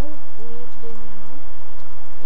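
A person's voice making two drawn-out low hooting notes, the second sliding up at its end.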